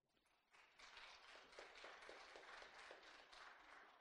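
Faint, quick footsteps, about four a second, starting about half a second in and fading just after the end.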